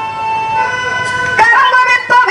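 Festival street-band music: a wind instrument holds one long, steady note, then plays a melody with bending notes from about one and a half seconds in.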